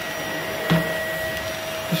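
Dyson vacuum cleaner running steadily as its floor head is pushed over carpet: an even rushing of air with a steady whine over it. Its filters and nozzles have just been cleaned and it is working brilliantly.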